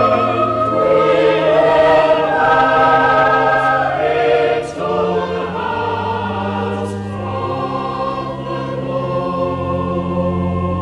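A cathedral choir sings slow sustained chords over held organ bass notes, in a reverberant cathedral. The sound dips briefly about halfway through, then carries on a little quieter.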